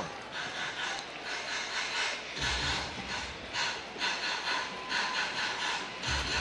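Ballpark crowd noise: a steady hubbub from the stands, with a brief low rumble about two and a half seconds in.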